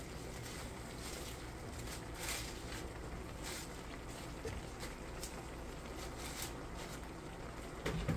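Soft, brief rustles of fresh spinach leaves being handled and dropped into a pan, several times, over a steady low hum.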